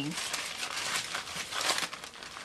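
Parchment paper crinkling as a wooden rolling pin rolls dough flat between two sheets, a steady rustle of small crackles.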